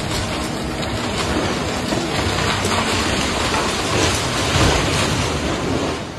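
Hydraulic excavator demolishing a wooden building: a continuous clatter and crunch of splintering timber and falling debris over the machine's engine, heaviest about four to five seconds in.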